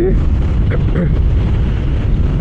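Heavy, steady wind buffeting on the camera microphone of a Royal Enfield Super Meteor 650 cruiser riding at highway speed, a low rumble that covers everything else.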